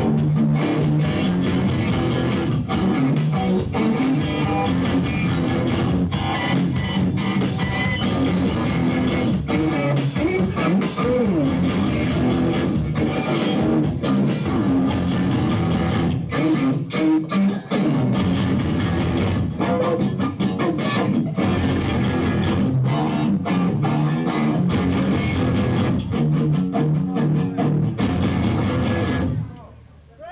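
Live instrumental noise rock from a three-piece band: electric guitar, bass guitar and drums, with hard drum hits throughout. The band stops abruptly near the end.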